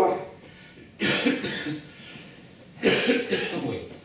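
Two short, raspy vocal bursts from a man, one about a second in and one near three seconds, each lasting well under a second.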